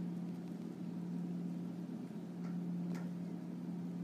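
A steady low hum of room equipment or electrical noise, with a couple of faint ticks past the middle.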